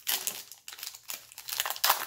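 A foil booster-pack wrapper being torn open by hand and crinkling, with a sharp rip right at the start and a louder one near the end; the pack tears open easily.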